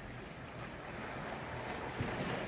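Steady outdoor seaside ambience: wind and gentle surf making an even hiss, growing slightly louder toward the end, with a faint steady low hum underneath.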